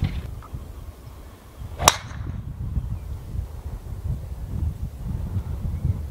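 A driver striking a golf ball off the tee: one sharp crack about two seconds in, over a low steady rumble.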